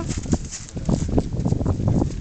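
Footsteps crunching in wet snow and slush, a quick, uneven run of crunches.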